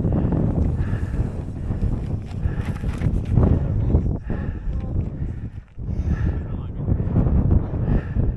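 Wind buffeting a helmet camera's microphone in a loud, steady rumble, with short vocal sounds from a person coming through about every second or so.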